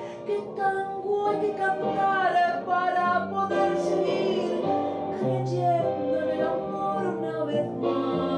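A woman singing a tango through a hand-held microphone, with instrumental accompaniment underneath.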